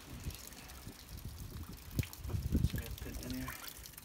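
Wind buffeting the phone's microphone: an uneven, gusty low rumble, with a sharp knock about two seconds in.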